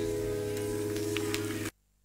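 Final held chord of a recorded Spanish-language Christian song, several sustained notes ringing together, that cuts off suddenly near the end.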